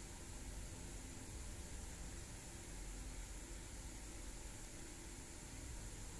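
Steady faint hiss with a low hum underneath: room tone and recording noise, with no distinct sounds.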